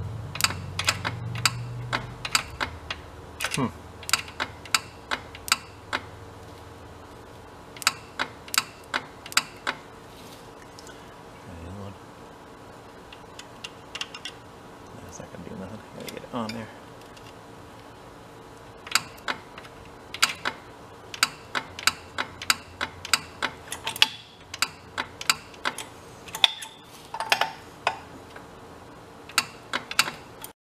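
Runs of sharp, irregular clicks, several a second, over a faint steady hum: relays in an electric lift's control wiring clicking as their terminals are jumped with a test lead.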